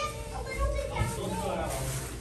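Background chatter of children's and adults' voices filling a busy room, with no single clear speaker.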